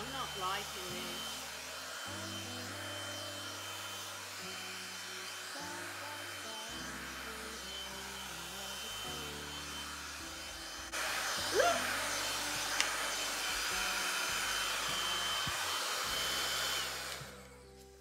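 Hair dryer blowing steadily on wet acrylic paint, with a steady high whine; it gets louder about eleven seconds in and shuts off shortly before the end.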